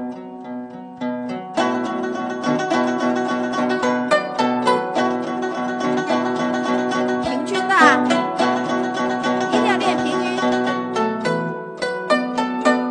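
Guzheng played in an even, rapid tremolo, the repeated plucks sustaining the notes over steady low pitches. It comes in fuller about a second and a half in, with a quick upward glissando across the strings about eight seconds in.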